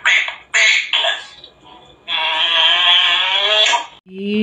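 African grey parrot vocalizing: a few short, loud calls in the first second, then, about two seconds in, one long sung note with a slight waver that lasts nearly two seconds.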